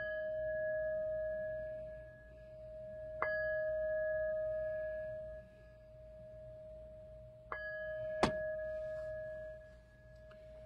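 A bell struck three times, a few seconds apart, each clear tone ringing on and fading slowly. A sharp click comes about eight seconds in.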